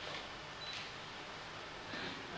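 A pause in a man's speech, filled only by faint steady background hiss and room tone.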